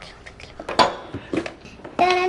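A few short knocks and clinks of things handled on a table laid with china and a tea service, the loudest about a second in.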